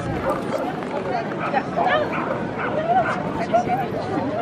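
A dog yipping and whining in short high, bending cries over the chatter of voices around it.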